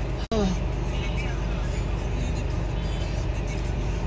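Steady low rumble of a car heard from inside the cabin, with faint voices in the background. The sound cuts out for an instant near the start.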